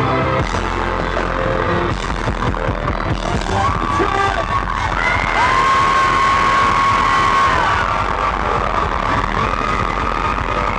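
Live dance-pop band playing loud through a venue PA, with electric guitar over a steady beat. A long held note comes in about five seconds in and lasts around two seconds.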